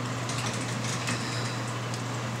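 Indoor room tone: a steady low hum under an even hiss, with a few faint clicks.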